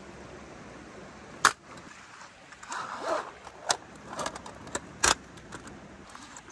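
Thin metal panels of a folding fire pit clinking as they are taken apart and stacked, with two sharp metallic clacks about one and a half and five seconds in and handling rustle between.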